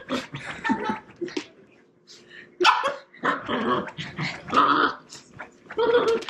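Two Shiba Inus, an adult and a young puppy, growling and barking at each other in play, in a string of short bursts with a brief pause about two seconds in.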